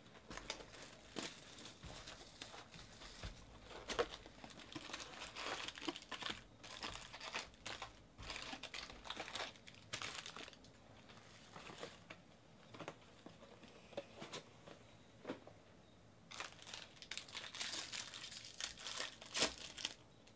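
Plastic trading-card pack wrappers crinkling and rustling as they are handled, in irregular bursts. There is a quieter stretch a little past the middle, then a busier run of crinkling near the end.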